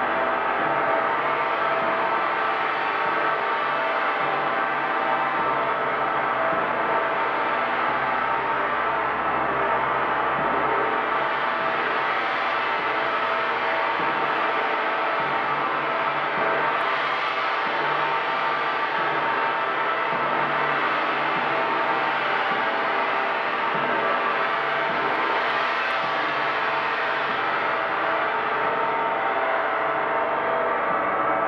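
Large hanging bronze gong played continuously with a soft felt-headed mallet, giving a steady, dense wash of many overlapping ringing tones in which no single strike stands out.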